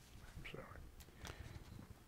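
Near silence: room tone, with a faint breath and a few soft mouth clicks close to a lapel microphone.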